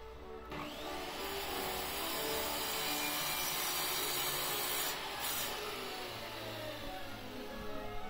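Circular saw rigged as a chop saw spinning up and cutting through a pine block, a dense hiss of blade in wood that eases off about five seconds in and winds down near the end.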